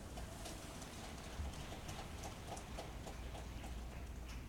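Quiet pause in a large hall: a low steady hum under faint, light taps, about three or four a second.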